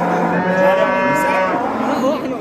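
A cow mooing: one long, steady moo that ends just before the close.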